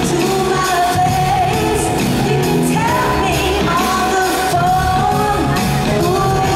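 Female pop group singing live in harmony over amplified pop backing with drums and bass, in a large arena hall.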